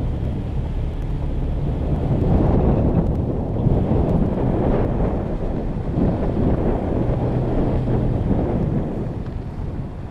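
2019 Toyota Tacoma pickup driving slowly on a dirt trail: a low engine hum under a rough rumble of tyre and wind noise that swells through the middle and eases near the end.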